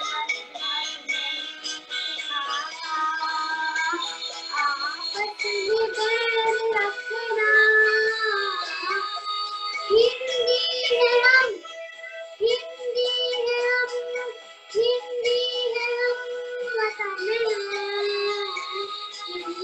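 A young girl singing solo in a high voice, holding long notes with a slight waver, phrase after phrase with short breath pauses a little past the middle.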